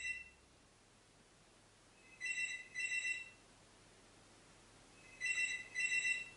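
Phone ringing: an electronic ringtone in pairs of short high tones, a pair about every three seconds.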